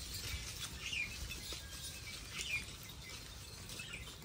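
Faint outdoor ambience: a few short, high bird chirps spaced a second or so apart, over a low rumble.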